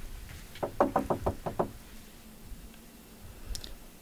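Knocking on a door: a quick run of about six raps, about a second in.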